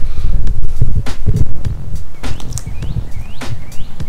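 Irregular low rumble of wind buffeting the microphone, mixed with handling knocks as the camera is moved. Over it, a small bird chirps several times in the second half.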